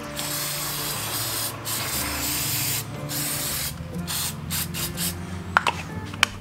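Aerosol battery terminal protector hissing from the can onto a car battery's positive terminal in several bursts: two long sprays of about a second each, a shorter one, then a run of short puffs near the end.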